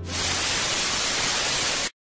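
Television static: a steady, even hiss that cuts off suddenly just before the end.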